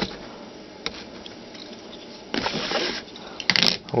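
A folding knife and a cardboard shipping box being handled: a few light clicks, a scraping rasp lasting about half a second a little past halfway, and a sharp click near the end.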